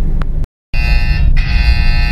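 Incoming-order alert of the Gojek GoPartner driver app sounding from a phone mounted in a car, signalling that a new booking has just been assigned. A steady, buzzer-like pitched tone sets in just under a second in and keeps going over the low rumble of the car cabin.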